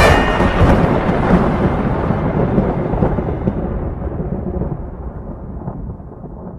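A long rumble of thunder, swelling unevenly and then slowly dying away.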